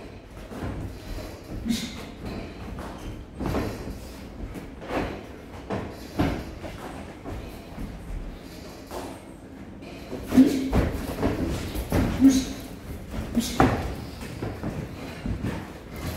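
Boxing sparring: irregular thuds of gloved punches and footwork on the ring canvas, with a quicker run of louder hits about ten to fourteen seconds in.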